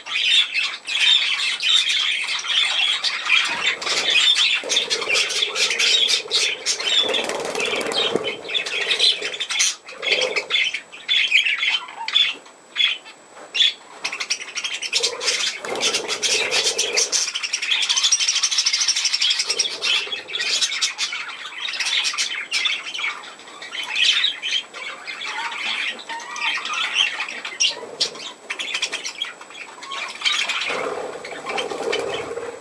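A flock of budgerigars chattering and squawking without pause. Frequent short clicks and occasional wing flutters are mixed in.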